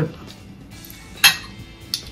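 Fork clinking against a dinner plate while someone eats: one sharp clink a little over a second in and a lighter one near the end.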